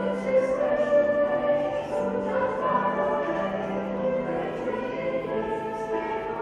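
Mixed school choir of girls' and boys' voices singing in harmony, holding sustained notes.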